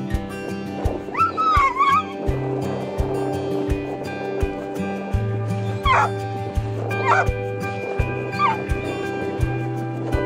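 A dog whining in high, wavering cries: one long cry about a second in, then three shorter ones in the second half, over background music with a steady beat.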